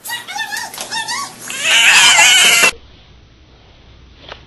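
Wavering pitched animal cries, then a louder, harsh screech that cuts off suddenly a little under three seconds in.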